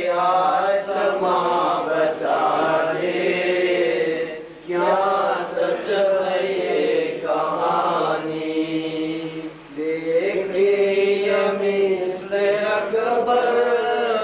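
Muharram mourning recitation (nauha): a voice chanting in long drawn-out phrases of about four to five seconds each, with short pauses for breath between them.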